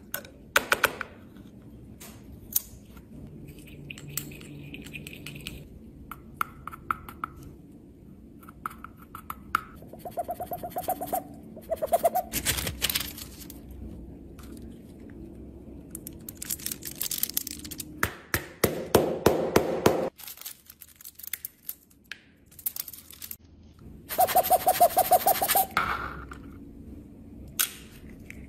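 Small clicks and taps of tweezers and plastic makeup compacts being handled, with several louder noisy stretches a second or two long.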